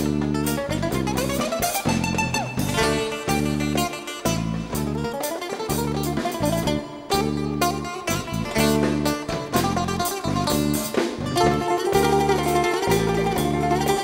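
Live Greek band playing an instrumental passage: a plucked bouzouki melody over electric bass, drum kit and goblet hand drum, with a steady bass rhythm.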